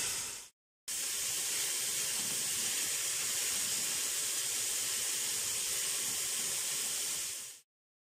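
Cubes of chicken sizzling in hot oil in a metal pot as they are seared, a steady high hiss. It breaks off for a moment about half a second in and fades away near the end.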